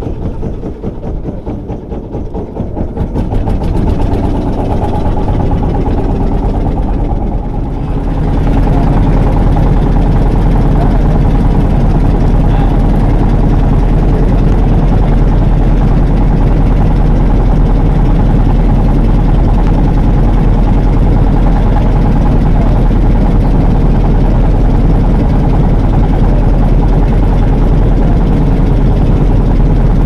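Small wooden fishing boat's engine running, growing louder about three seconds in and again about eight seconds in, then holding steady.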